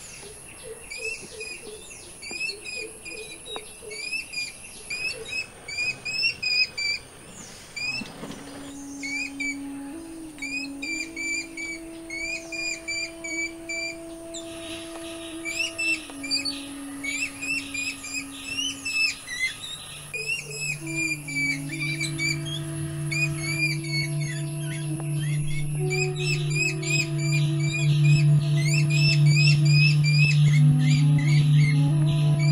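A flock of jungle babblers chattering with rapid, repeated short squeaky calls throughout. A music score of held tones comes in about eight seconds in, a deep drone joins at about twenty seconds, and the music grows louder toward the end.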